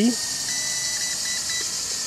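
Radio transmitter of a WL Toys V333 quadcopter beeping to confirm that headless mode is switched off: one longer high beep followed by three short ones, about half a second in. A steady high hiss runs underneath.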